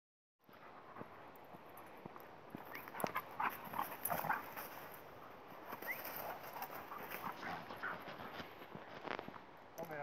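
Two dogs playing on dry fallen leaves: paws scuffling and crunching through the leaves. A run of short, high voice-like sounds comes a few seconds in.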